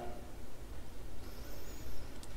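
A pause between spoken lines: faint room tone with a steady low hum and light hiss. A faint high-pitched whine comes in during the second half.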